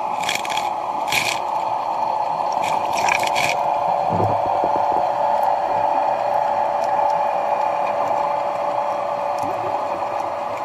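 Muffled underwater sound through a camera housing: a steady rushing noise, with a few short splashy bursts of water in the first three and a half seconds and a dull knock about four seconds in.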